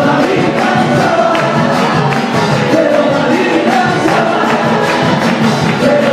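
A congregation singing a worship song together over instrumental backing with a steady beat.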